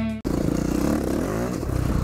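Suzuki DR-Z400E single-cylinder four-stroke dirt bike engine running while ridden, its pitch rising and falling about halfway through as the throttle changes. The last of a guitar music track cuts off just before it.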